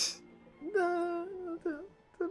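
A drawn-out hummed vocal from the anime's audio: one long held note, then a short swooping note near the end.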